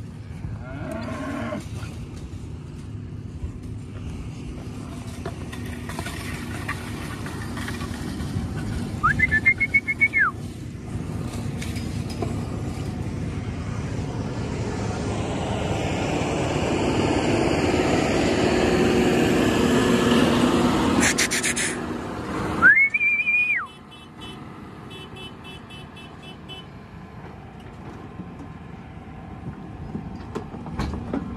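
A tractor engine running, growing louder toward the middle and then dropping away suddenly a little after two-thirds of the way through. Two short whistles sound over it, each rising, holding and falling: one about 9 seconds in and one about 23 seconds in.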